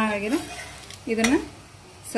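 A woman's voice speaking briefly twice over the faint sizzle of a dosa on a hot cast-iron tawa, with a metal spatula scraping the pan.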